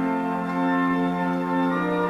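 Church organ playing slow, sustained chords that shift every second or so.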